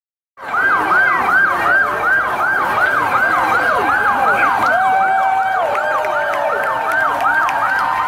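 Several police car sirens in fast yelp mode at once, each rising and falling about three times a second and overlapping out of step. They start about a third of a second in and settle into steadier tones near the end.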